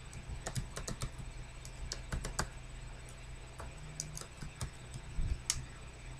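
Scattered, irregular clicks of a computer keyboard being typed on, quietly, over a faint steady low hum.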